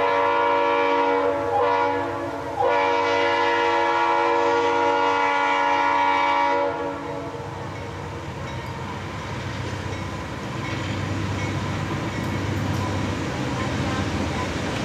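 Conrail diesel locomotives' air horn sounding a chord of several notes in two blasts: a short one, then a long one of about four seconds. After that the locomotives' diesel engines rumble as the lead units draw close.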